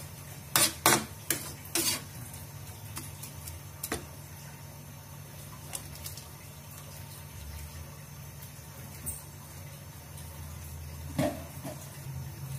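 A metal spatula knocks and scrapes against an enamel wok several times in the first two seconds, once more about four seconds in and again near the end. Between the knocks there is a steady low hum from the wok of shrimp simmering in a little added water.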